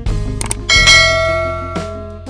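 A notification-bell sound effect: one bright bell ding about two-thirds of a second in, ringing out and fading over about a second, over background guitar music.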